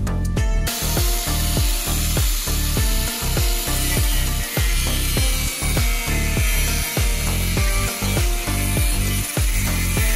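Makita 9553NB angle grinder running with an abrasive disc, a steady grinding hiss that starts just under a second in, over background music with a steady beat.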